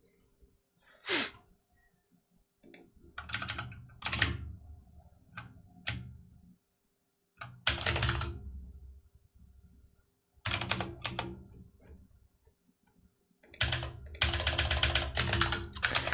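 Typing on a computer keyboard: quick bursts of keystrokes separated by short pauses, with the longest run of typing near the end.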